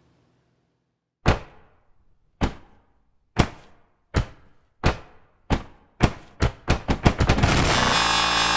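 Sharp percussive hits, each with a short decaying tail, starting about a second in and coming faster and faster until they run together into a dense roll near the end: the opening of an electronic track.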